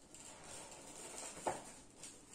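Faint rustling of hands handling model railway track on a foam board, with one sharp click about one and a half seconds in.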